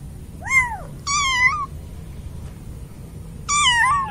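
Kittens mewing: three high mews, a short arched one about half a second in, a longer one about a second in, and another near the end.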